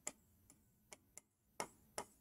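A handful of light, irregular clicks from a stylus tapping and stroking a touchscreen while digits are written, with near silence between them.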